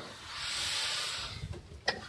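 A soft hiss lasting about a second, followed by a short sharp click near the end.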